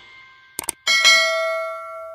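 Subscribe-button animation sound effect: a few quick clicks, then about a second in a bright notification-bell ding that rings on and slowly fades.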